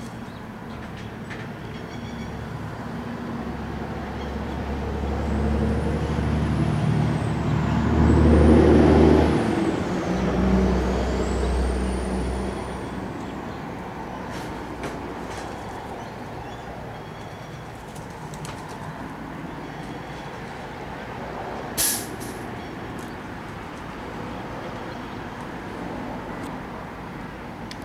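A heavy vehicle passing. Its engine rumble swells to a peak about nine seconds in, surges once more, then fades away. A single sharp click comes near the end.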